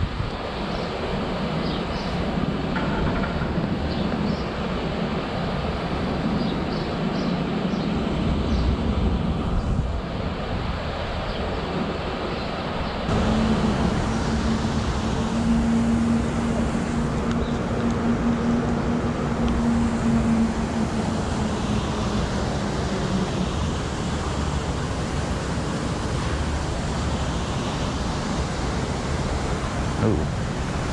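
Street traffic noise with vehicles running. About halfway through the background changes suddenly, and a steady low engine hum runs for about ten seconds.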